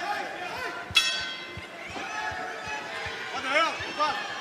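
Round bell struck once about a second in to start the round, its ring fading over a second or so, over arena voices with a shout near the end.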